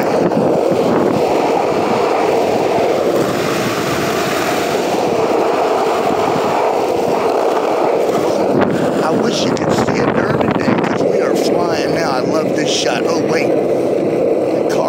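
Skateboard wheels rolling fast over street pavement: a steady rolling noise with wind on the microphone, and a few short clicks and rattles in the second half.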